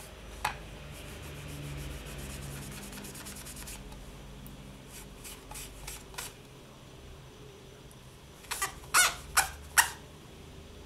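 A tissue damp with alcohol rubbed over the surface of a polymer clay pendant, a soft scrubbing, with a few light clicks midway and several sharp, louder scratches or knocks near the end.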